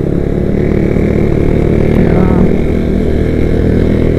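Honda motorcycle engine running steadily at cruising speed while it is ridden, heard close up from the handlebars.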